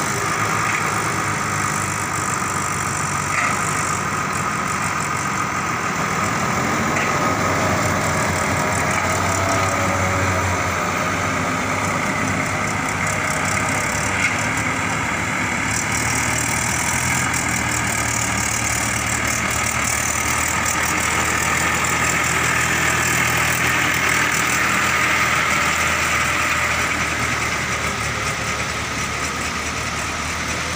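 Diesel tractor engine running steadily under load as it hauls a trolley heaped with sand through deep mud, with a heavy truck's diesel engine running close by.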